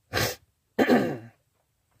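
A man clearing his throat: a short breathy burst, then a longer, voiced one about a second in.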